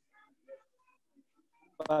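A pause in a man's speech with only faint scattered background sounds, then his voice resumes near the end, preceded by a short click.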